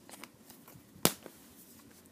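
Plastic Blu-ray case snapping open: one sharp click about a second in, amid faint handling noise.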